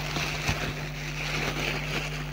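Thin black plastic carrier bag rustling and crinkling as hands rummage in it and lift out pomegranates.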